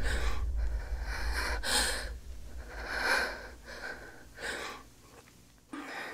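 A woman's ragged, frightened breathing: about five breaths roughly a second apart, growing fainter. Under the first breaths, a low rumble dies away over the first two seconds.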